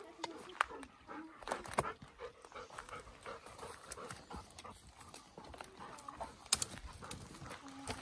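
Dry twigs and dead branches crunching and snapping underfoot on a littered forest floor, with several sharp cracks, the loudest about half a second, two seconds and six and a half seconds in. A golden retriever makes short whining sounds among them.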